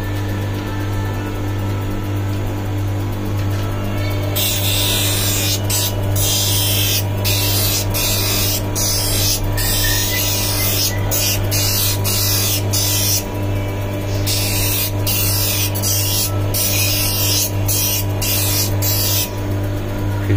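Hand lens edger's motor humming steadily while a plastic eyeglass lens is ground on its spinning wheel. From about four seconds in there is a gritty grinding hiss that breaks off and starts again many times as the lens is lifted and set back. The lens edge is being worn down because the lens is still too big for the frame.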